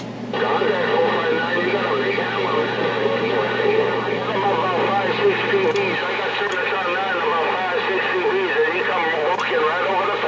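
Voices of other stations coming through a CB radio's speaker, thin and garbled, with a steady low hum that stops about six seconds in.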